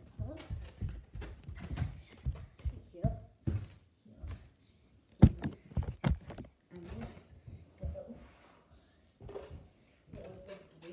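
Irregular thumps and knocks from a red rubber balloon being batted about and a handheld phone being jostled, the sharpest knock about five seconds in.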